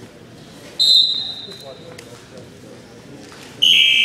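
A short, high steady tone sounds about a second in and fades. Near the end a loud electronic scoreboard buzzer starts and holds: the time buzzer of a wrestling bout.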